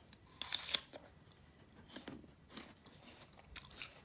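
A crunchy bite into food about half a second in, followed by a few fainter crunches of chewing.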